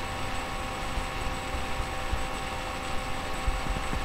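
Steady background hum and hiss with a few constant thin tones and some faint, irregular low bumps.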